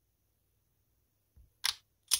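Near silence, then one brief sharp noise about a second and a half in.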